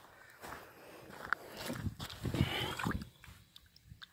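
A hand swishing a small fossil tooth in shallow river water to rinse it, with light irregular splashes and a few clicks, dying away about three seconds in.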